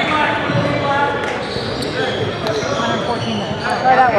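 Players' and spectators' voices chattering in a large gymnasium during basketball play, with short squeaks from sneakers on the hardwood court.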